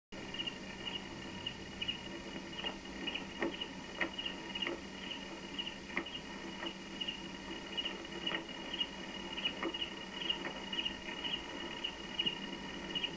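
Crickets chirping steadily at night, a high pulsing chirp about two to three times a second, with scattered soft taps among it. This is film soundtrack ambience heard through a television speaker.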